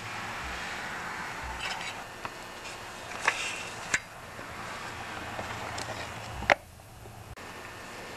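Light metallic clicks and clinks of a small two-stroke engine piston and crankcase parts being handled, over a faint steady hum. The sharpest click comes about six and a half seconds in.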